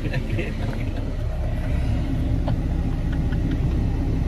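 Steady low rumble of a 4x4's engine and road noise heard inside the cabin, with a few faint knocks.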